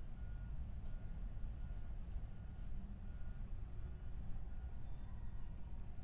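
Low steady rumble of a CN diesel-hauled freight train rolling across a steel truss bridge, with a faint short beep repeating about every two-thirds of a second. From about halfway, a thin high steady whine comes in and grows louder.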